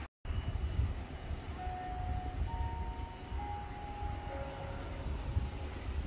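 Wind rumbling on the microphone, with a few faint, steady whistled notes at different pitches in the middle.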